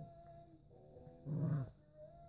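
Small dogs play-fighting, with one short growl from a dog about a second and a half in.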